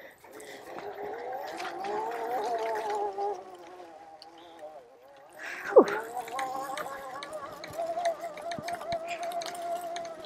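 Oset 24R electric trials bike's motor whining as it rides over rough grass, the pitch rising and falling with the throttle. About six seconds in there is a brief, sharp falling squeal, the loudest moment, then a steadier whine with scattered light knocks and rattles.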